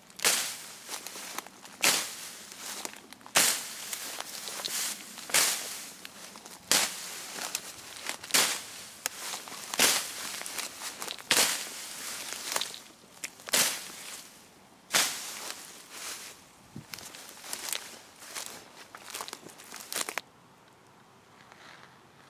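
A survival baton's blade, fitted to three joined sections, swung repeatedly to cut down nettles and grass: sharp swishing slashes about every one and a half seconds, each followed by rustling and crackling of cut stems and leaves. The slashing stops shortly before the end.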